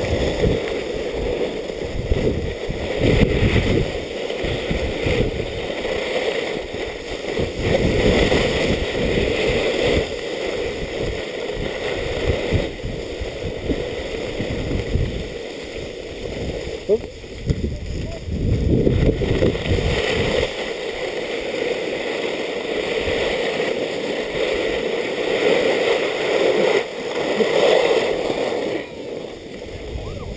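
Wind buffeting the camera microphone, with skis hissing and scraping over packed snow on a downhill run. The gusty low rumble eases after about two-thirds of the way through.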